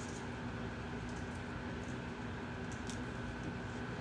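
Quiet room tone with a steady electrical hum, and a few faint, sparse clicks from handling a metal mesh evening bag and its chain.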